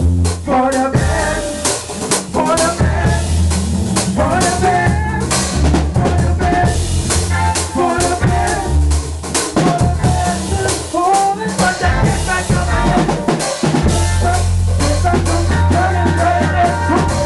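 Live band playing an instrumental stretch of a gospel soca tune: drum kit with rimshots, snare and bass drum keeping a steady beat under a bass line and melodic instruments.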